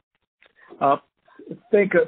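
Speech only: after a brief dead-silent pause, a man on a conference-call line says a drawn-out "uh" and then resumes talking.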